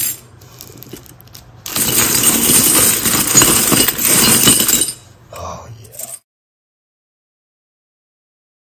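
A heap of 90% silver coins and silver bullion bars stirred by hand, clinking and jingling against each other. A sharp clink comes at the start; from about two seconds in a loud, continuous jingle of coins runs for about three seconds, followed by a softer clink.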